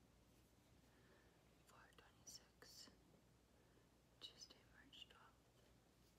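Near silence: room tone with faint whispering, in two short stretches about two seconds in and again about four seconds in.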